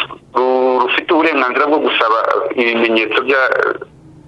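Speech only: a person talking almost without pause, with a thin, tinny sound.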